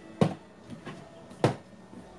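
Two sharp knocks about a second and a quarter apart from a bedroom wardrobe being worked while clothes are put away.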